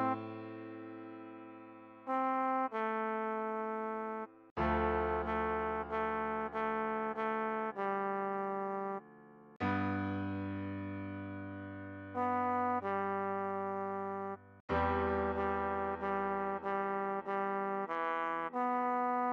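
A trombone playing a pop melody note by note, with runs of repeated notes, over piano chords. The chords strike and fade about every five seconds, with brief breaks between phrases.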